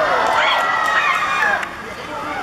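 Several high-pitched voices, children's and onlookers', shouting and calling out at once as a shot goes in on goal, with a few sharp knocks of the football being struck. The shouting dies down near the end.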